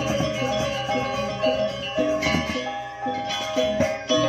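Balinese gamelan gong ensemble playing: bronze metallophones and gongs ringing in a dense stream of short struck notes over held tones, with a loud accented stroke near the end.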